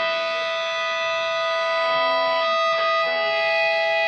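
Electric guitar through an amplifier holding long, steady ringing notes between songs, with some pitches dropping out and new ones coming in about two and a half seconds in.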